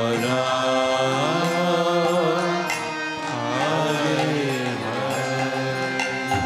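Devotional kirtan: a voice sings a long, gliding melodic line over a harmonium's steady held chord.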